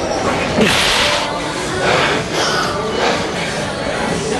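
A man's forceful, breathy exhalations of effort as he strains through a set with heavy dumbbells. The loudest comes about half a second in, and several shorter ones follow. Background music plays throughout.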